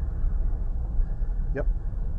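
Steady low rumble of wind and road noise from a moving vehicle travelling along a road, with a brief spoken "yep" near the end.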